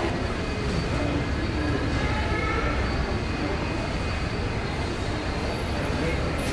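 Steady low rumble of airport apron noise from aircraft and ground equipment, heard through the terminal glass, with a faint steady high whine over it.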